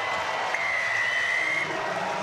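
Stadium crowd applauding after a try is scored, with a steady high tone sounding for about a second in the middle.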